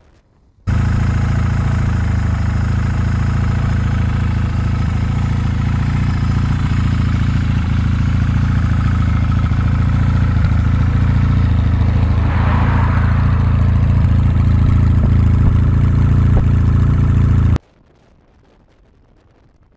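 Yamaha XS2's air-cooled 650 cc parallel-twin engine idling steadily on the parked bike, loud and close. It cuts in suddenly a little under a second in and cuts off suddenly just before the end, with a short rushing swell about two thirds of the way through.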